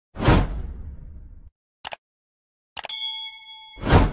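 Edited outro transition sound effects: a sudden whoosh-and-hit that fades over about a second, a short click, then a bright ding that rings for about a second, and a second whoosh-and-hit near the end.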